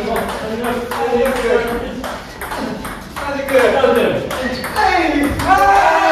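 Table tennis rally: the celluloid-type ball clicks off the paddles' rubbers and the table in a quick, steady run of hits. Players' voices call out over it and rise into excited shouts over the last couple of seconds as the count passes its target.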